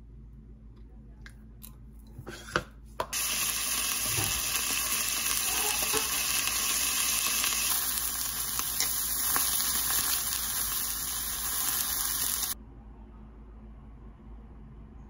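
Mackerel fillet frying in a nonstick pan, sizzling in a steady hiss that starts abruptly about three seconds in and cuts off a little before the end. Before it, a few light clinks of a spoon on a plate.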